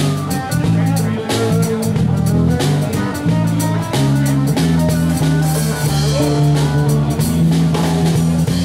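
A small live band playing an instrumental passage: steady bass and keyboard notes with guitar, and regular sharp percussion hits.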